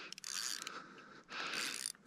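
Fishing reel working under load in short bursts of mechanical whirring and clicking, each about half a second, while a heavy hooked fish is played that will not come in.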